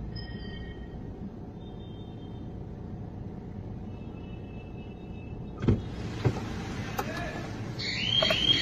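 Low, steady rumble of street traffic heard muffled from inside a car, with a few sharp knocks about six seconds in.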